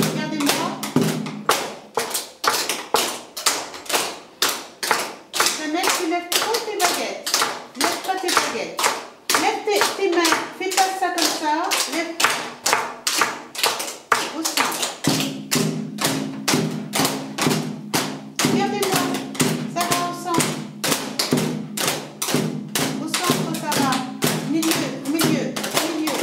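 A group of children beating drumsticks on the seats of folding chairs in a steady, quick rhythm, with voices over the beat in the middle.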